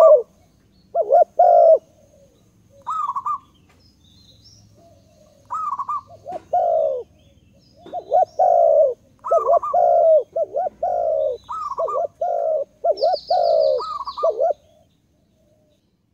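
A bird calling over and over in short, separate notes, each dipping slightly in pitch, in irregular groups with pauses between them. Near the end there is a brief, rapid high trill.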